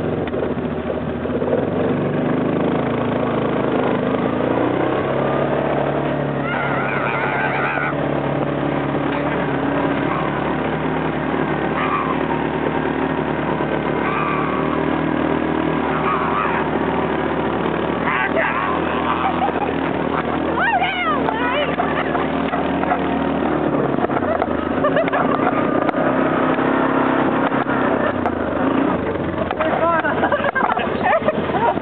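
A vehicle's engine running steadily while it tows a person across a grass pasture, with brief voices calling out over it now and then.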